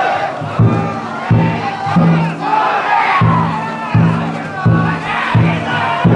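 Large taiko drum of a Banshu autumn-festival float beaten at a steady beat, about three strokes every two seconds, starting about half a second in. Over it, a crowd of bearers shouts in chorus.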